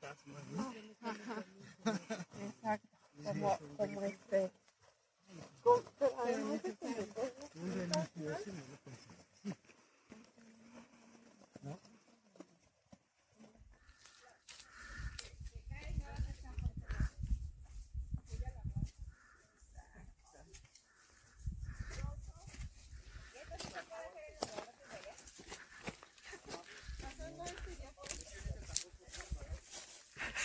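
Indistinct voices of several people talking in the open. About fourteen seconds in, a low rumble sets in and comes and goes in several stretches, with fainter voices over it.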